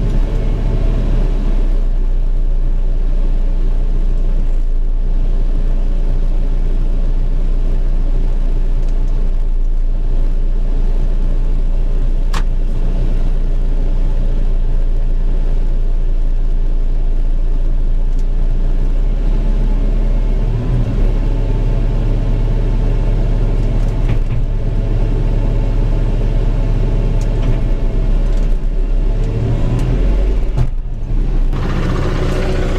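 Telehandler's diesel engine running steadily, heard from inside the cab; its note steps up to a higher, steady level about two-thirds of the way through. A single short click about twelve seconds in.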